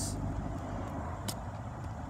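Steady low rumble, with one short sharp click a little over a second in.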